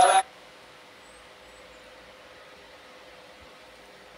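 A voice is cut off sharply at the very start. After that there is only a faint, steady hiss with a thin, even hum.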